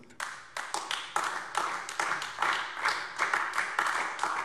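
Scattered applause: a few people clapping, with individual handclaps overlapping irregularly.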